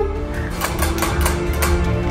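A spinning prize wheel ticking as its pegs strike the pointer, a quick run of clicks about four or five a second, over background music.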